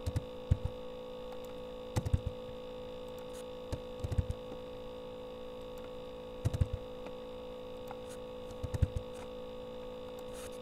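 Steady electrical hum with a single held tone, broken every two seconds or so by quick clusters of two to four sharp clicks from a computer mouse and keyboard as characters in an equation are selected and retyped.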